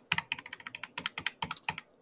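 Computer keyboard typing: a rapid run of keystrokes, about ten a second, as characters are deleted and retyped in a command line. The clicks stop just before speech resumes.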